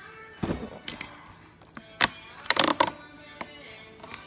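The cardboard door of a LEGO advent calendar being pushed in and torn open along its perforations: a few sharp taps and clicks, then a short burst of ripping cardboard about two and a half seconds in.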